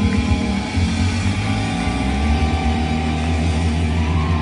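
Live rock band playing loudly: electric guitar, bass guitar and drums, with a low bass note held steady from about a second in.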